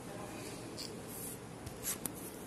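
A hand brushing across the glazed face of a ceramic tile sample: faint dry rubbing and scratching, with a short sharper scrape near the end.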